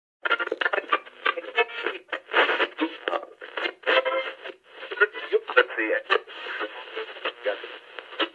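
Thin, radio-filtered speech in short, broken snippets.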